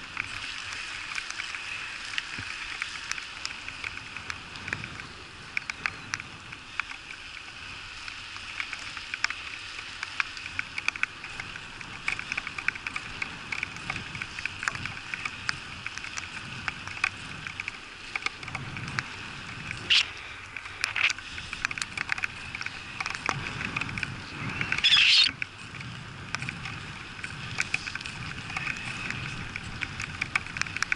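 Bicycle rolling on a wet asphalt road: steady tyre and wind noise with many small ticks of raindrops striking the bike-mounted camera, and one brief louder noise about 25 seconds in.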